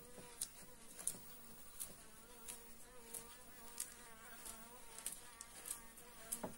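A bee buzzing in a steady, slightly wavering drone. Short crisp crackles come about once a second as a plastic uncapping scraper cuts through the wax cappings of a honeycomb.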